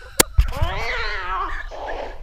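A sharp click and a heavy thump, then a cat yowling in one long wavering cry. It is a comic sound effect added over the footage, as if a wild cat below had been hit by the falling slipper.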